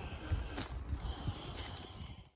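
Quiet outdoor background with soft footsteps and rustling on dry leaf litter, and a faint high steady note in the second half.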